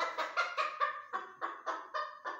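Mini bantam rooster clucking rapidly while being held, a quick string of short calls at about five a second.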